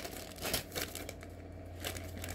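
Clear plastic poly bag crinkling as it is handled, in short irregular crackles that ease off for a moment past the middle.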